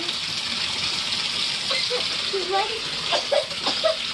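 Bathtub filling from the tap: a steady, even rush of running water throughout, with a child's voice breaking in briefly a couple of times.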